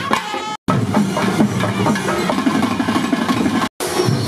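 Festival procession brass band playing: horns and trumpets sound held notes, broken off half a second in. After a short gap, a loud stretch of band music with drums and horns plays, cut again near the end.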